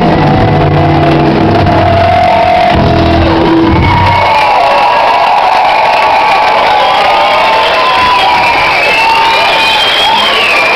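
A rock band's final chord rings out and stops about four seconds in, followed by an audience cheering and shouting. The recording's sound is degraded.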